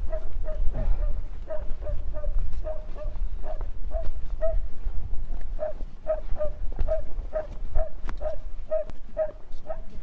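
A dog yelping in short, even-pitched yips, about two to three a second, over a low rumble of wind on the microphone.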